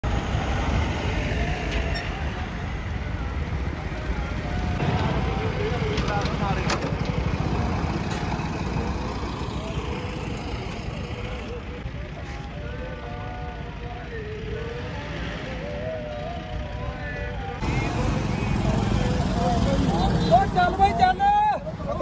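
Outdoor road noise with a heavy low rumble of wind on the microphone and vehicles on the highway. Distant voices rise in the middle, and louder voices close by come in near the end.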